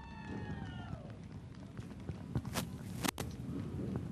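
A spectator's long, high whoop, its pitch rising and then falling, fading out about a second in, over a faint low background rumble. Two sharp clicks follow about two and a half and three seconds in.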